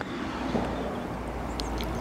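Quiet steady outdoor background noise: a low rumble with a faint hiss, and a couple of faint clicks near the end.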